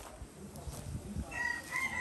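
A rooster crowing: one long, held call that starts just over a second in.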